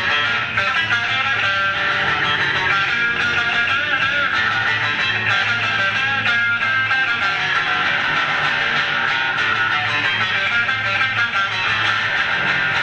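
Loud, steady instrumental rock band music led by electric guitar, with bass guitar underneath.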